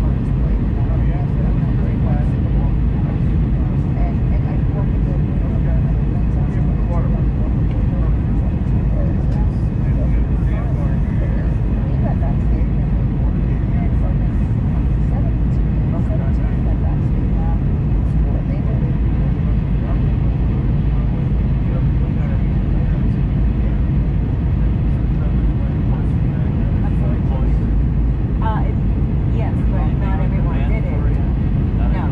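Steady low roar inside the cabin of an Airbus A319 airliner, its engines and the rushing airflow heard from a window seat over the wing as it descends. Indistinct passenger voices murmur underneath.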